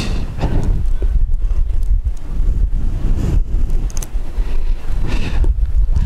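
Wind buffeting the microphone: a loud low rumble that flutters up and down throughout.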